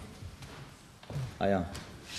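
Quiet hall room tone with a couple of faint clicks, then a short spoken "a ja" a little over a second in.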